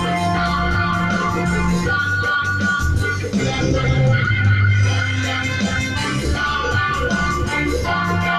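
Live reggae band playing an instrumental stretch on guitars, keyboard and drums, with a strong, steady low end.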